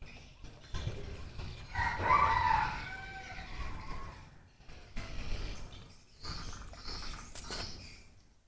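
A rooster crowing once, about two seconds in. Under it and after it come low bumps and scuffs as a man climbs down into a water-filled brick fish tank and steps into the water.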